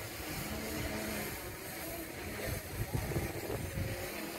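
Wind buffeting the microphone: an uneven low rumble that swells and gusts, strongest in the second half.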